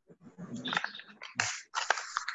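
Scratchy rustling and a few sharp clicks coming through a video-call microphone, as if the device is being handled close to it.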